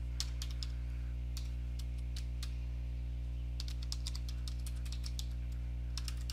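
Computer keyboard typing: a few scattered keystrokes, then a quick run of keys in the last couple of seconds. A steady low hum runs underneath.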